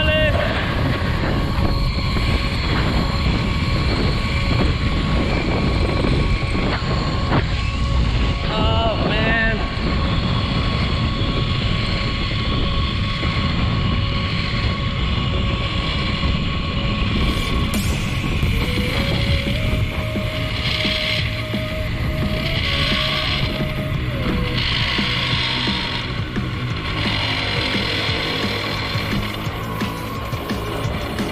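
Wind rushing over the camera microphone during a fast zip line ride, with the trolley rolling along the steel cable giving a steady whine. The rider whoops right at the start and again about eight seconds in, and the rush eases a little near the end as the trolley slows toward the landing platform.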